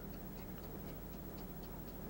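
Faint, quick, even ticking over a steady low hum in a quiet room.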